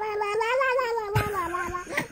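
A baby's long, high-pitched vocal 'aaah', shaped by an adult's hand held over its mouth, with a slightly wavering pitch. There is a soft thump a little past halfway.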